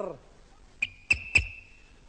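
A quiz-show buzzer: three sharp clicks of the podium button about a second in, with a steady high beep that starts at the first click and lasts about a second, signalling a contestant buzzing in to answer.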